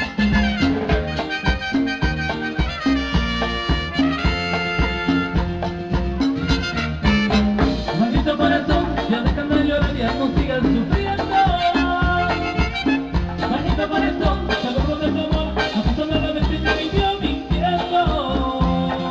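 A live Latin dance orchestra playing an upbeat tropical number, with a horn section over a steady bass and percussion beat.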